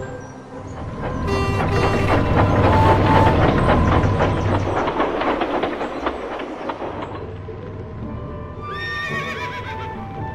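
A train rumbling and rattling past over music for the first five seconds or so. Then a horse whinnies once, briefly, near the end.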